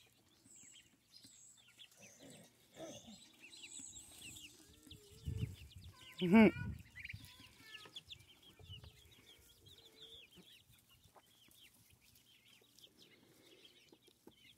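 A flock of young chickens making soft, short, high peeping calls and quiet clucks throughout, with a short human laugh about six seconds in.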